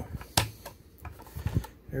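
Hard plastic clicks and light knocks from handling a toy tank's hinged cockpit canopy as it is lifted open, one sharp click about a third of a second in, then a few softer taps.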